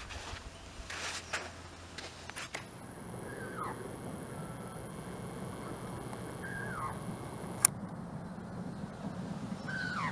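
A bird calling in flight: three short, falling calls about three seconds apart.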